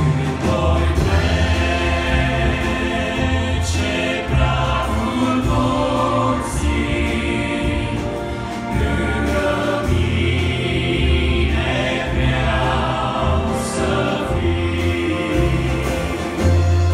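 Male vocal group singing a Romanian hymn in harmony over an amplified church band of bass guitar and keyboards, with steady bass notes underneath and a few crashes along the way.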